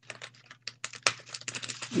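Irregular light clicks and rustles from hands folding and gripping a stiff woven placemat that is being shaped into a hat.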